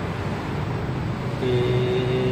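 Steady low hum of metro station background noise. About one and a half seconds in, a steady held tone joins it.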